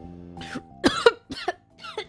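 A woman coughing in a choking fit: four coughs in quick succession over about a second and a half, the loudest about a second in.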